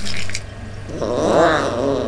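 Cartoon kitten yowl: a short rough noise at the start, then from about a second in one drawn-out call that rises and falls in pitch.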